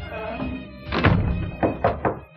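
Knuckles knocking three times on a door, a single knock followed by a quick double knock, over background music.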